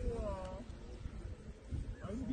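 A short pitched vocal call in the first half-second, over a steady low rumble.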